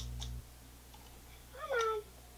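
A steady low camcorder hum with a click cuts off abruptly at a tape edit, then near the end a toddler gives one short whimper that slides down in pitch.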